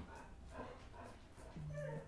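A dog whimpering faintly, with a short, slightly louder whine near the end, over quiet room sound.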